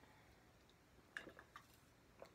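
Near silence while a person drinks from a glass, with a few faint swallowing clicks a little past the middle.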